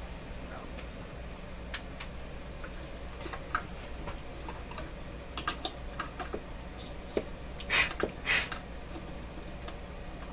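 Light clicks and ticks of fingers handling a dial string against a radio chassis and pulley. Near the end come two short puffs of breath, blowing the string into position so it can be grabbed.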